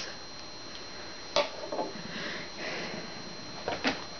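Light handling noises of small makeup items being put down and picked up: a sharp click about a second and a half in, soft rustling and breathing, and a couple of quick clicks near the end, over a faint steady high-pitched whine.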